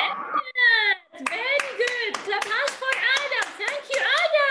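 Quick, even hand clapping, several claps a second, starting about a second in, over high-pitched voices in a chant-like rising-and-falling pattern: a clapping cheer.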